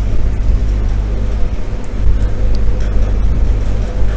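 Steady low hum of background noise on the microphone, with a few faint clicks.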